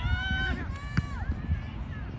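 Raised voices shouting during a soccer match, with a single sharp knock about a second in, over a low rumble of outdoor noise.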